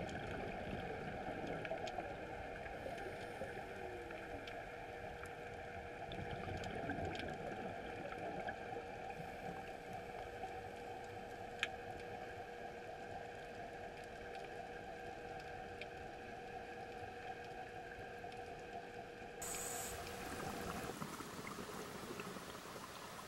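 Underwater ambience heard through a camera housing: a steady hiss with a faint steady hum, scattered faint clicks, and one sharp click about halfway through.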